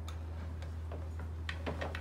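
Light, irregularly spaced clicks and taps of a small wooden child's chair and handling as a toddler is set down onto it, thickest in the second half, over a steady low hum.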